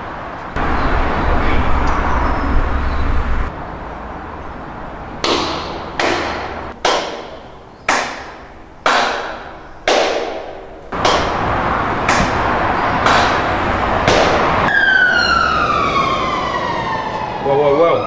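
Trailer sound design: a low rumble, then a run of about eight sharp hits, each dying away over most of a second. A siren wail follows, its pitch sliding down for about three seconds and starting to rise again near the end.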